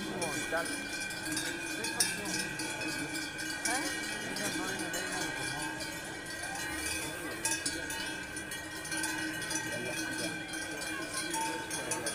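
Cowbells on Hérens cows ringing continuously, several bells overlapping, over the murmur of a crowd.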